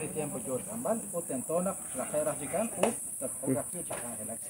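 A steady, high-pitched insect drone running under men's conversation.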